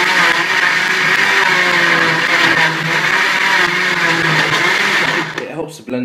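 Kenwood countertop blender motor running at full speed with a steady whir, blending yogurt, milk and apple that are now fluid enough to churn freely. It cuts off about five seconds in.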